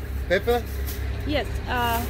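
Short snatches of people's speech, the clearest near the end, over a steady low rumble.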